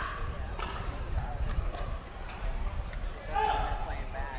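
Pickleball rally: about four sharp pops of paddles striking the plastic ball, spaced roughly half a second to a second apart, in the first half. Voices come in near the end.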